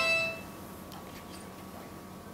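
A mobile phone's electronic tune of quick stepped notes, cut off about half a second in as the phone is switched off, followed by faint room tone with a few light handling clicks.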